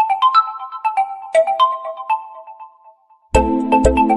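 Realme phone ringtone: a melody of short, bright, chiming notes, about three a second, each ringing out, fading away in the second half. Near the end a louder, fuller section of the tune comes in with a deep, regular beat.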